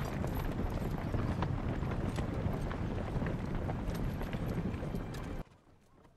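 Many horses' hooves clip-clopping with the general noise of a mounted party on the move. It cuts off abruptly about five and a half seconds in.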